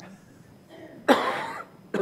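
A person coughs once, loudly, about a second in.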